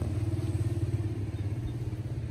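An engine running steadily at idle: a low hum with a fast, even pulse.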